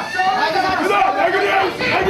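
Several men's voices shouting over one another in Japanese: cornermen calling instructions to fighters, with the low chatter of a hall audience behind.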